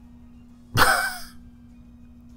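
A man's short, breathy vocal sound about a second in, like a sigh or exhale, as he loses his train of thought. A faint steady hum runs underneath.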